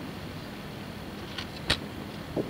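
Steady hiss and room noise of an old tape recording of a lecture room, with a faint click and then a sharper click near the end.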